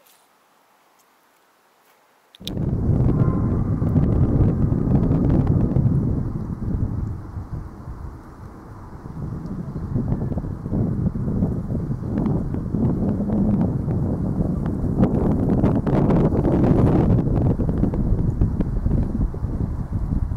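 Wind buffeting the microphone: a loud, gusting low rumble that starts suddenly a little over two seconds in, after near silence, and rises and falls with the gusts.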